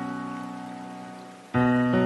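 Slow, soft piano music: a held chord fades away, and a new chord is struck about one and a half seconds in.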